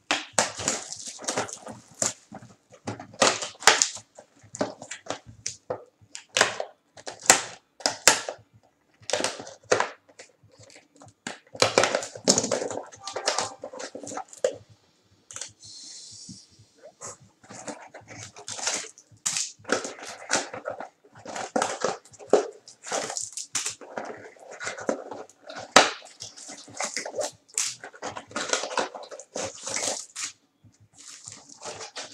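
Plastic shrink wrap crinkling and cardboard trading-card boxes rustling as they are unwrapped and opened, in a run of irregular crackles, with a brief hiss about halfway through as the wrap comes off.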